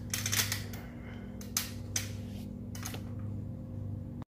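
Steady electric hum from the homemade cabinet incubator's motor, with a few sharp clicks and knocks scattered through, the sharpest about a second and a half and two seconds in.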